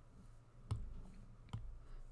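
Two sharp clicks about a second apart over a faint low hum.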